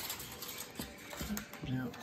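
A few faint, light clicks and taps from hands handling food at a plate on a kitchen counter, with a short spoken "yeah" near the end.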